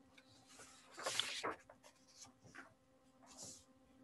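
Faint rustling and scraping handling noise, loudest for about half a second a second in, with a few soft clicks and a low steady hum underneath.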